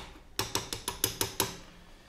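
Metal spoon clinking against the inside of an aluminium saucepan, a quick run of about eight clinks in just over a second.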